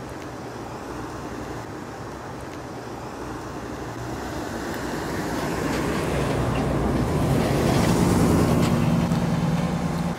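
Class B motorhome driving past on a paved campground road: engine and tyre noise build to a peak about eight seconds in, then begin to fade as it heads away.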